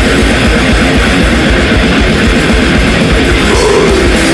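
Heavy metal band playing: distorted electric guitars, electric bass and drums in a dense, loud wall of sound with rapid low drum hits.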